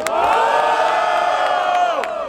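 A crowd of spectators yells together in one long held "ohh" that lasts nearly two seconds and slides down in pitch as it ends. It is the crowd's reaction to a rapper's line in a freestyle battle.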